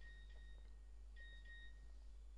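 Two faint electronic beeps, each a steady high tone lasting a little over half a second, with a short gap between them, over a low steady hum.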